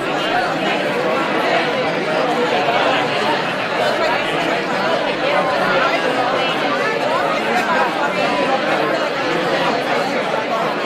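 Crowd chatter: a roomful of people talking at once in pairs and small groups, a dense and steady hubbub of overlapping conversations.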